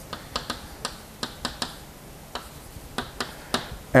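Chalk tapping and scratching on a blackboard as a word is written: a dozen or so sharp, irregular taps in small clusters.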